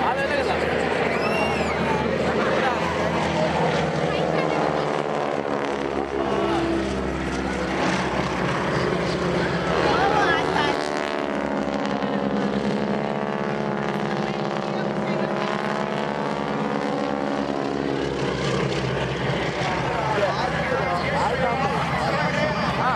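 Two Boeing Stearman biplanes' radial engines droning together in a display pass. The engine note peaks and shifts in pitch about halfway through as they go by.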